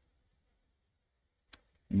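Near silence, broken once by a single short, sharp computer mouse click about one and a half seconds in.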